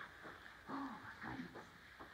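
Small dog making two short, faint whining sounds, about a second apart.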